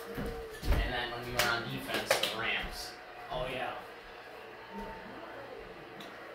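Football game broadcast playing on the TV, with voices talking. A few sharp slaps or knocks come in the first two seconds, and the sound grows quieter after about three seconds.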